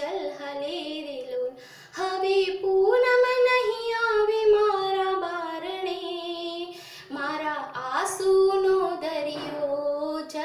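A woman singing solo, unaccompanied, in long held, gliding phrases, with short breaks for breath about two and seven seconds in.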